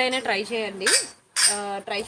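A woman speaking, her words not transcribed, with a few light metallic clinks of costume jewellery being handled.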